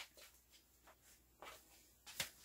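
Near silence: room tone with a few faint taps and rustles from handling a notepad.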